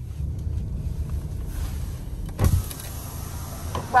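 Car's electric window winding down, a steady low motor rumble, with a single thump about two and a half seconds in.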